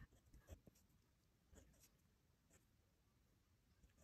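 Near silence, with a few faint scratches of a pen writing on paper.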